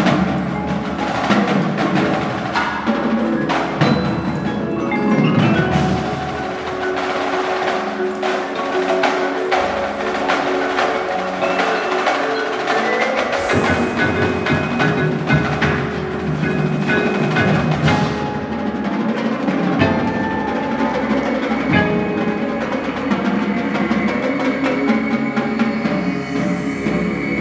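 Indoor percussion ensemble playing a show piece: marimbas and other mallet keyboard instruments sound sustained, ringing chords over dense struck percussion.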